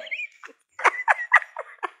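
People laughing, a brief high squeal and then a run of short breathy laughs, about four or five a second.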